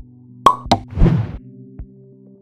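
Sound effects for an animated outro title over steady low music tones: two sharp hits about half a second in, then a louder noisy burst lasting under half a second, and a soft click near the end.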